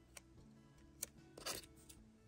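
Faint background music under light handling of small scissors: a few soft clicks and a short snip or rustle about one and a half seconds in.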